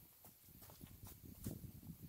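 Footsteps on a dirt forest trail: a run of irregular, soft knocks, the loudest about one and a half seconds in.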